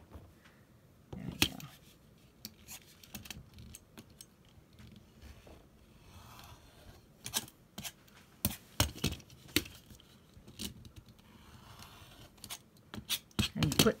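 Rotary cutter slicing through cotton fabric along the edge of an acrylic quilting ruler on a cutting mat, trimming a pieced block square. The cuts come as a few short strokes, among scattered clicks and taps of the cutter and ruler.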